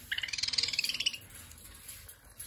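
Caged parrot chattering: a rapid run of high chirps lasting about a second.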